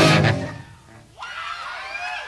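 A live punk rock band finishes a song: the full band with electric guitars stops right at the start and the sound dies away within about a second. From about a second in, the crowd yells and whoops with wavering voices.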